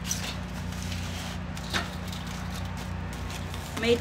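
A few short knocks and crinkles of heavy-duty foil packets being set down on the metal grate of a charcoal kettle grill, over a steady low hum.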